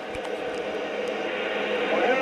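Static and hiss from an RCI-2970DX radio's speaker on 26.915 AM, with a faint, garbled voice under the noise, between transmissions from a distant skip station.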